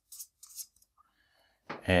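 Marker pen writing on flip-chart paper: a quick run of short scratchy strokes in the first half second, then a faint squeak of the tip.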